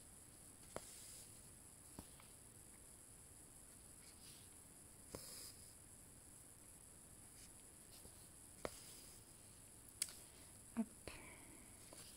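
Mostly near silence, broken by a handful of faint ticks and a soft rasp as a needle and embroidery floss are pushed and pulled through cross-stitch canvas.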